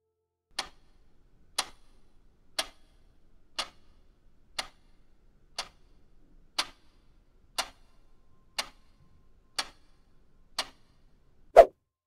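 Quiz countdown timer ticking like a clock, one tick a second, eleven ticks. A louder, lower-pitched single hit follows as the timer runs out.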